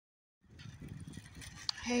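Wind buffeting the phone's microphone, an uneven low rumble that starts about half a second in, with a single sharp click shortly before a voice begins.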